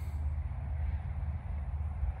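Wind buffeting the microphone: a low, uneven rumble with no other distinct sound.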